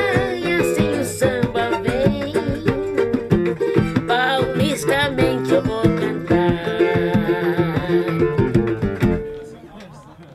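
Samba song played live by a small band, with plucked guitar strings and percussion under a woman's singing voice. The music stops about nine seconds in as the song ends.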